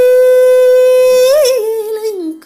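A woman's solo singing voice holding one long, steady note, breaking into a quick wavering turn about one and a half seconds in, then sliding down in pitch near the end.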